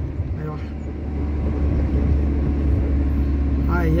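Steady low drone of a vehicle's engine and road noise, heard from inside the moving vehicle.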